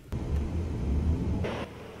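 A low rumble with a faint hiss, typical of a vehicle, that fades after a brief brighter rush about a second and a half in.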